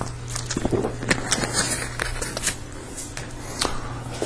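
Bible pages rustling and being turned, with scattered small clicks and handling noises over a steady low hum.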